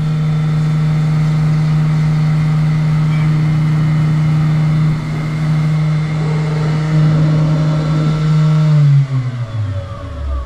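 Benchman VMC 5000 CNC mill's spindle running at a steady pitch while an end mill cuts a nylon bushing, then spinning down with a falling whine about nine seconds in as the cycle finishes.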